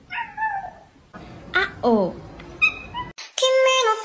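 Cat meowing in falling calls that sound like "wow": one call, then two close together. Music starts near the end.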